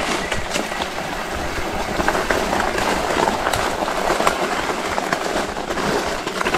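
Fat-tire off-road e-bike rolling down a rough dirt trail: a steady noise of tyres and wind with frequent knocks and rattles from the bike, whose front fork the rider says clatters.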